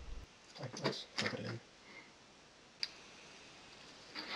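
Two brief, low vocal sounds about a second in, then a single sharp click near the end.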